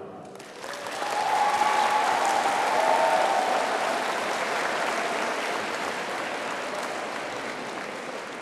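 Audience applauding at the end of a speech. The clapping builds over the first second or so and then slowly dies away.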